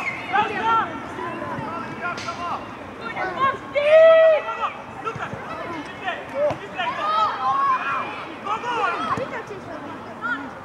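Several voices shouting and calling across a youth football pitch during play, overlapping one another, with one loud drawn-out shout about four seconds in.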